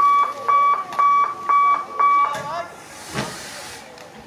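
An electronic beeper sounds five loud, even beeps at one pitch, about two a second, then stops; a short burst of hiss follows about a second later.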